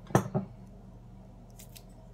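Two quick, sharp knocks about a fifth of a second apart as a glass jam jar is set down on a hard surface, followed by a few faint scuffs of handling near the end.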